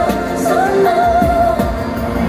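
A female K-pop singer sings a slow pop song live into a handheld microphone over the backing track, holding long notes with vibrato, amplified through a concert arena's sound system.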